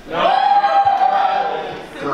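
One voice shouting or singing a single long, high, drawn-out note: it swoops up at the start, holds steady for about a second and a half, and fades near the end.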